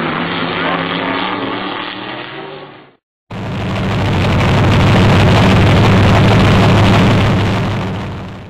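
Dirt-track race cars' engines running on the oval, fading out about three seconds in. After a brief silence, a louder, steady engine sound swells up and then fades away near the end.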